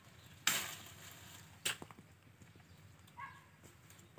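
A long pole striking and working at a fruit cluster in the tree canopy. There is a sharp crack with a brief rustle of leaves about half a second in, then a second sharp snap at about a second and a half. A short faint call comes near the end.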